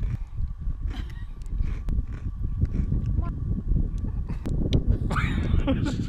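Uneven low rumble of wind buffeting the microphone, with scattered light clicks, then a woman laughs near the end.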